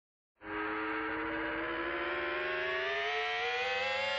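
A sustained synthesizer tone with many overtones enters about half a second in and slowly rises in pitch: the opening riser of a piece of music.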